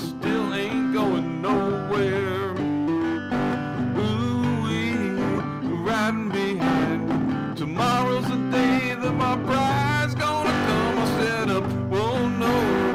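A man singing with vibrato while strumming an acoustic guitar, playing steadily throughout.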